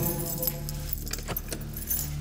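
A bunch of keys on a key ring jangling, with a few sharp clinks.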